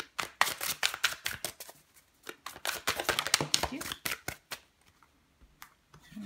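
A deck of Fountain Tarot cards shuffled by hand: a quick run of crisp card flicks and slaps for about four and a half seconds, then it goes quiet, with a single soft tap near the end.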